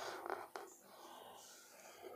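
Faint strokes of a felt-tip marker rubbing across a whiteboard as a drawing is made, loudest in the first half-second.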